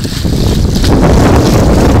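Wind buffeting the microphone as a loud, steady low rumble that swells a moment in, over water splashing as a foot stamps on a flooded metal drain cover.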